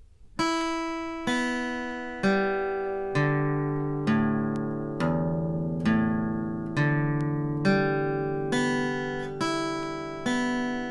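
Steel-string acoustic guitar picked slowly, one downstroke on each string, with a homemade flatpick cut from a plastic gift card. A single note sounds about once a second and rings on under the next, stepping down in pitch across the strings and then back up.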